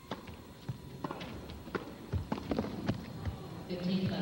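A tennis ball struck back and forth by rackets in a doubles rally, a series of sharp hits at uneven spacing mixed with players' footsteps on the court. Near the end, as the point is won, crowd noise rises.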